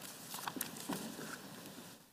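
Faint footsteps on a hard floor: a few light, clicking steps.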